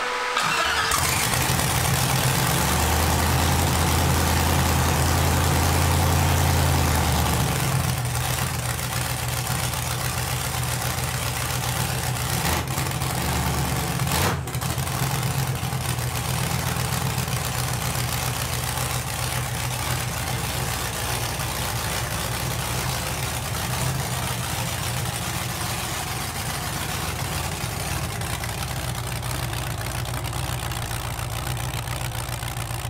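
Cammed 4.8-litre LS V8 in a Chevy S-10, running through open zoomie headers, fires up and holds a high idle, then about seven seconds in drops to a lower, steady idle.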